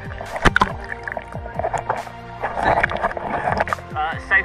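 Background music over water sloshing and splashing close to the microphone, with many short, sharp splashes and clicks as a swimmer moves in a river pool at the camera's waterline.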